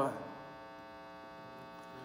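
Faint, steady electrical hum with many even overtones from the live sound rig's amplification, heard in a short gap in the song.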